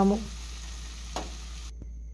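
Ivy gourd and tomato pieces sizzling in a frying pan as they are stirred with a steel spoon, with a single sharp clink of the spoon a little over a second in. The sizzle cuts off suddenly near the end.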